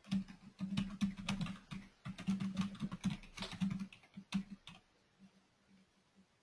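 Typing on a computer keyboard: a quick run of keystrokes with a short break about two seconds in, stopping a little before the end.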